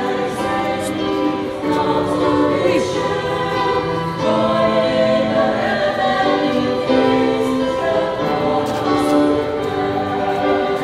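Choir singing a slow hymn in long held notes that move from chord to chord.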